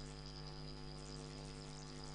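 Steady electrical mains hum, a low-level buzz with many evenly spaced overtones that does not change.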